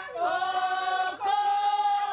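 Women singing into a microphone, led by one woman, holding two long notes, the second one higher and starting a little past halfway.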